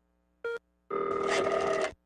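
A telephone ring sound effect: a short beep about half a second in, then a ringing phone for about a second that cuts off sharply.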